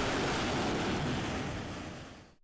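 Steady rushing wind noise across an aircraft carrier's flight deck, fading out near the end.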